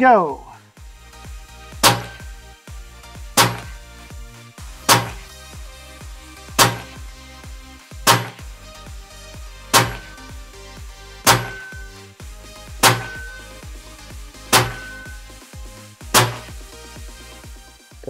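Ten shots from a Hatsan Hercules .30-calibre PCP air rifle, evenly spaced about one every one and a half seconds, each a sharp report with a short ring-off.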